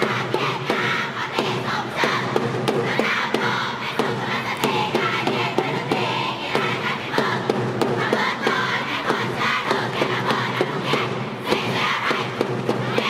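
A large group of schoolgirls chanting and shouting together as a cheer squad, over music, with sharp beats scattered throughout.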